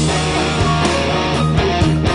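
Hard rock band playing an instrumental passage without vocals: electric guitar, bass and keyboards over a steady drum beat.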